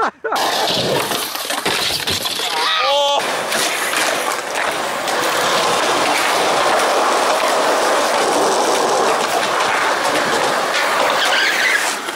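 Skateboard wheels rolling over a concrete sidewalk: a loud, steady rolling noise that sets in about three seconds in and runs on, after a brief voice-like cry near the start.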